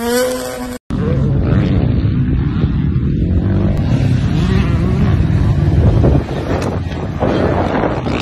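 Dirt bike engines revving: a short burst of rising revs that cuts off abruptly just under a second in, then another dirt bike engine running hard with its pitch rising and falling.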